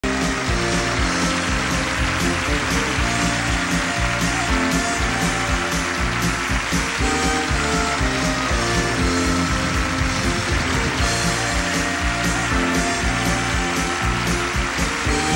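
Country band playing an instrumental with fiddle and electric guitars over a steady drum beat.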